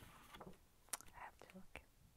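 Near silence: a few faint clicks and soft rustles of paper being handled, with a faint whispered murmur.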